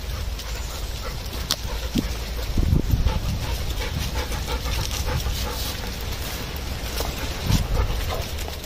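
Dogs panting as they run with the walker along a woodland path, with rustling and a steady low rumble from the moving camera. Low thumps come about three seconds in and again near the end.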